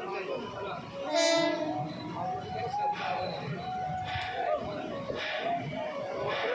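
Running noise of a moving train heard from its open doorway, with a short horn blast about a second in.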